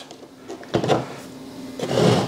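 A hollow 3D-printed plastic lamp shade being handled and set onto its light base: a short knock just under a second in, then plastic rubbing and knocking on the base near the end.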